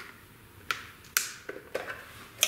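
Small hard-plastic fuse and relay panel being handled and fiddled with: a sharp plastic click a little under a second in, a louder one just past one second, then a few lighter clicks and taps.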